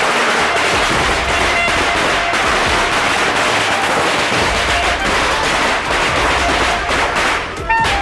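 A string of firecrackers going off in a rapid, continuous crackle, with music playing over it.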